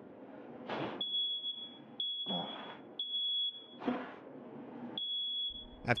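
Smoke alarm going off, set off by toast burning in a toaster oven: a steady high-pitched beep about a second long, repeating with short breaks. Three short rushes of noise come between the beeps.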